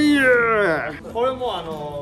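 A loud, drawn-out voice-like call that slides down in pitch, followed about a second later by a second, shorter call that rises and then falls.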